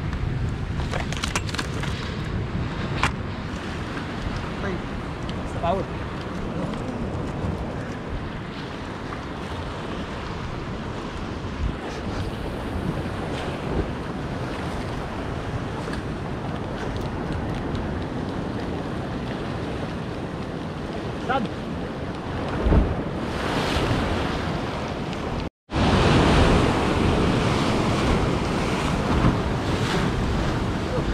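Sea surf breaking and washing over a rocky shore, with wind buffeting the microphone. After a short break about 25 seconds in, the surf is louder.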